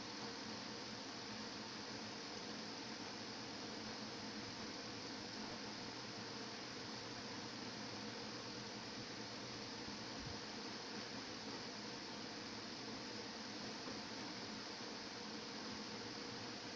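Steady background hiss with a faint low hum underneath, unchanging throughout, with no distinct events.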